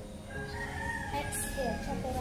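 A rooster crowing: one long call lasting about a second and a half, starting about half a second in and trailing off with a falling pitch near the end.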